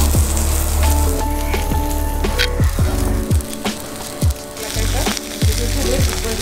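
Steaks and split marrow bones sizzling on a tabletop grill, heard under background music with held notes and a deep bass note that drops in pitch several times.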